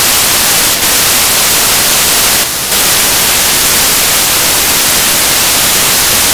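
Loud, steady static hiss with no speech or music, dipping briefly twice, once just before a second in and again about two and a half seconds in.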